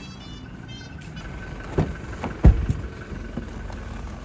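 A car door being opened by its handle, with latch clicks and then a heavy thump about two and a half seconds in, followed by a low rumble.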